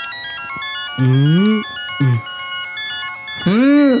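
A mobile phone ringtone playing a song: a quick, beeping electronic melody with short phrases of a voice singing over it. It cuts off abruptly at the end as the call is answered.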